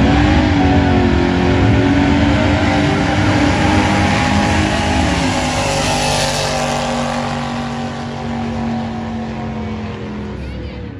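Drag cars launching off the line at full throttle: the engine note rises sharply at the start and then holds at high revs as they race down the strip. The sound is brightest as a gasser-style car passes close about six seconds in, then slowly fades as the cars run away down the track.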